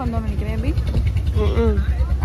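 A woman talking over a steady low rumble.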